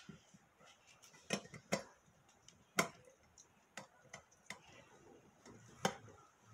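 Scattered sharp knocks and clicks of a knife, orange halves and a stainless steel hand citrus juicer being handled on a plastic cutting board, about six in all, the loudest nearly three seconds in.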